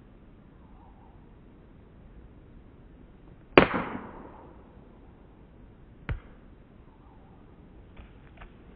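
A croquet mallet strikes a croquet ball: a single sharp crack with a short ringing tail about three and a half seconds in. A second, softer knock follows about two and a half seconds later.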